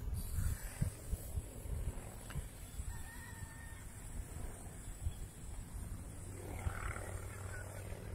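Wind buffeting a phone microphone outdoors: irregular low rumbling gusts over a steady faint hiss, strongest in the first couple of seconds.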